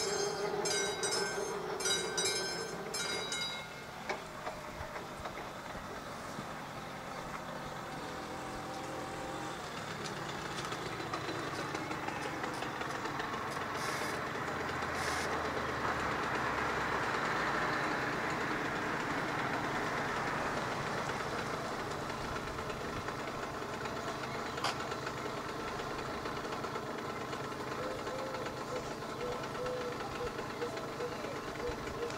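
AŽD 71 level-crossing warning bell (classic bell) ringing in regular strokes about twice a second while the barriers come down, stopping about three or four seconds in. After it, a rumble swells to a peak in the middle and slowly fades.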